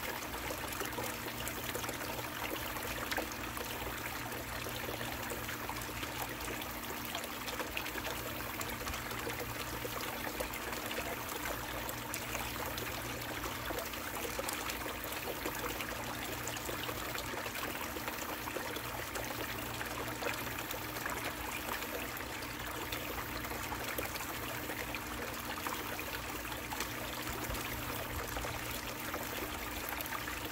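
Water running steadily down an Angus Mackirk mini long tom sluice and pouring off its end into the tub below. A steady low hum runs underneath.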